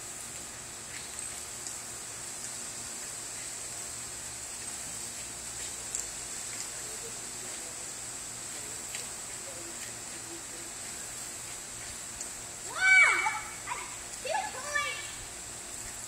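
Steady hiss of a backyard water toy spraying, with two short pitched cries a little over a second apart near the end.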